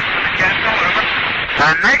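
Hiss of static on a spacecraft air-to-ground radio link, with a man's voice cutting through clearly near the end.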